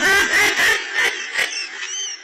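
A man laughing in a run of quick bursts that trails off near the end.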